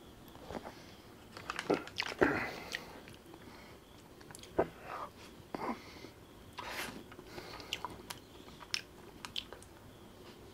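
Close-miked eating sounds from biting and chewing a pista kulfi ice cream bar: irregular short bites and mouth clicks, the loudest about two seconds in.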